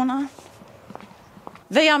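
A woman speaking, broken by a pause of about a second and a half in which a few faint footsteps tap on paving.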